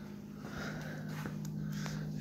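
A faint steady low hum, with soft footsteps and faint handling noise as someone walks along beside the bike.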